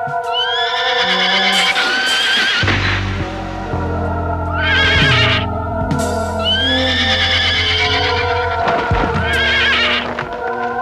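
A horse neighing over sustained background music: two long whinnies, one near the start and one about six seconds in, with a shorter one around five seconds.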